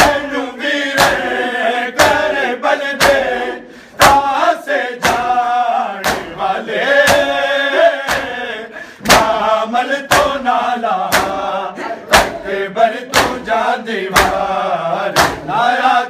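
A group of men chanting a noha in unison while their palms strike their bare chests in matam, the sharp slaps landing together about once a second.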